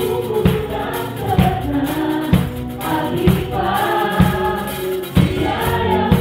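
Drum kit playing a steady beat in a live worship band, a kick drum hit about once a second, under a group of singers, male and female, singing together.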